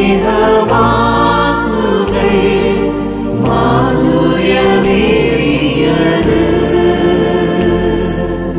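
A group of men's and women's voices singing a Malayalam Christian song together in harmony over instrumental backing, with the bass note changing about every second and a half.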